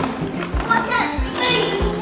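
Young children's voices and chatter over background music with a steady beat.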